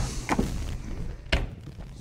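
Books being handled and set down on a lectern: two short knocks, the second sharper and louder about a second and a half in.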